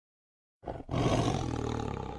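A tiger roar: a short first burst about half a second in, a brief break, then one long roar that begins to fade near the end.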